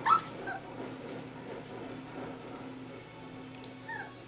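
Rhodesian Ridgeback puppies yelping and whimpering at play: one sharp, loud yelp right at the start, a smaller one half a second later and another near the end. Background music plays underneath.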